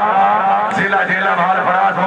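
A man's voice announcing over a stadium loudspeaker, with a steady low hum underneath.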